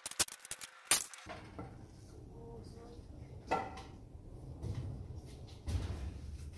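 Sharp knocks and clicks of a wooden 2x4 board being handled and set down on a miter saw, several in the first second with the loudest about a second in, and a low thump near the end.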